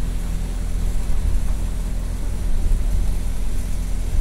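A heavy engine idling with a steady low hum, under a constant hiss of wind.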